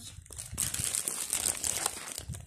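Plastic bag of mini burger buns crinkling as it is handled and set down, a dense crackle that starts about half a second in.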